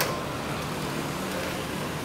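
A steady, even background noise, like distant traffic or a fan, with a sharp click right at the start.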